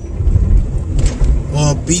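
Steady low rumble of a car driving, heard from inside the cabin, with a man speaking briefly near the end.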